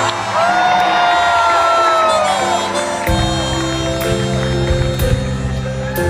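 Live band music with accordion: steady held accordion chords with a long held voice note over them that drops off near the middle, then the full band with drums and bass comes in about halfway through, the drum hits falling about once a second.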